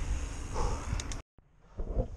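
Wind rushing over a bike-mounted action camera's microphone with tyre and road rumble while cycling, with a couple of short clicks, cut off abruptly a little over a second in. Then quiet indoor room tone with a brief knock near the end.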